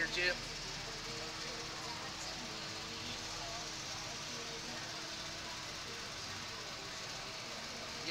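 Steady background noise with a faint, steady hum and faint distant voices.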